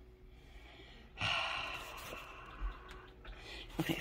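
A woman's long breathy sigh, starting suddenly about a second in and fading away over about two seconds.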